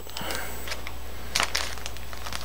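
Faint crinkling and rustling of a thin plastic zip-top bag as a pinch of dubbing is pulled out of it, with one brief crisp rustle about a second and a half in, over a steady low hum.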